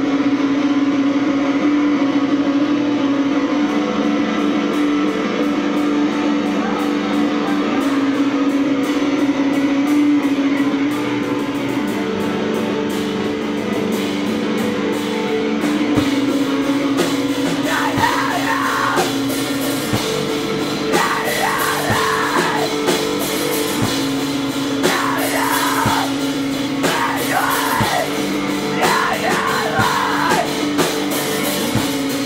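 A screamo band playing live: distorted electric guitar opens on held, ringing notes, drums come in about halfway through, and screamed vocals enter shortly after in repeated bursts.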